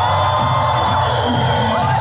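Loud music playing in a large hall while a crowd cheers and shouts.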